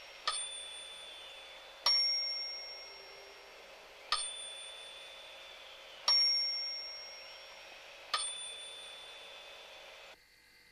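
Two small bells on an experiment scoreboard ringing in turn, each with its own tone: five single strikes about two seconds apart, each ringing on and dying away.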